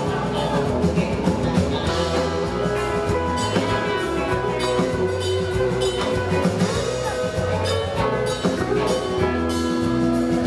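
Live country band playing an instrumental passage for line dancing: electric guitar, bass guitar, drum kit and pedal steel guitar, over a steady beat.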